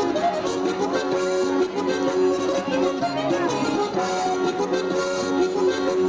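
Basque fandango dance music, with an accordion carrying the melody.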